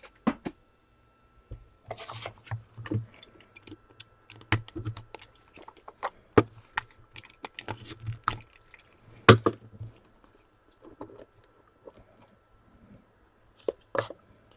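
A sealed trading-card box being cut open with a utility knife and handled by gloved hands: an irregular run of sharp clicks, taps and scrapes, with a brief rustling hiss about two seconds in.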